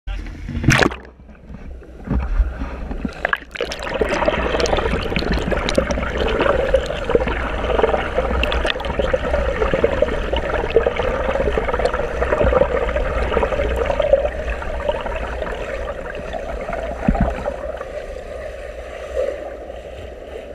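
Pool water churned by a swimmer's front crawl strokes and kick, picked up by a camera in the water: a continuous rushing, splashing wash that sets in about four seconds in and eases off near the end. A couple of sharp knocks come in the first few seconds.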